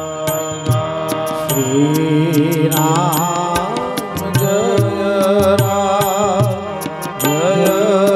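Devotional singing with live accompaniment: a wavering singing voice over a steady held drone, with regular sharp percussion strikes keeping the beat.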